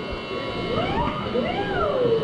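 Live punk club sound between songs on an audience recording: several pitched sounds slide up and then back down in arcs over the room noise, just before the band starts playing.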